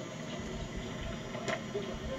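Steady low background hiss with no clear event, and a single faint click about one and a half seconds in.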